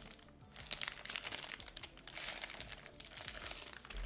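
Paper wrapper crinkling around a hotteok, a Korean brown-sugar pancake, as it is bitten and chewed close to the microphone, in a run of irregular rustles and crackles.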